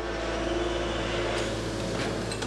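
Industrial fans blowing cooling air onto a hot rotomoulded kayak mould: a steady rush of air over a low hum.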